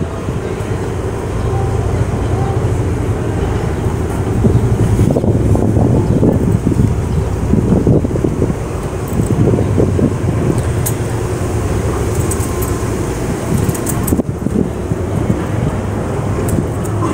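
Outdoor street ambience: a steady low rumble of road traffic, with indistinct voices in the middle stretch.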